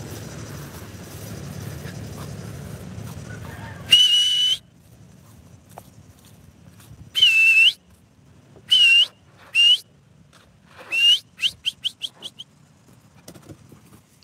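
A person whistling to call a dog: a loud whistle about four seconds in, then several more spaced a second or two apart, some dipping and rising in pitch, ending in a quick run of short pips. A steady low rushing noise fills the first four seconds.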